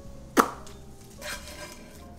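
Kitchen handling sounds: one sharp knock, as of a utensil or dish on the counter, about half a second in, then a brief soft scrape.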